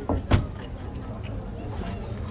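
Bottles being handled in an open glass-door drinks fridge: two quick knocks near the start, then steady low background noise.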